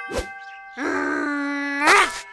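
A knock over a brief ringing tone. Then a cartoon T-Rex's long groaning vocalisation, held on one pitch for about a second and rising at the end.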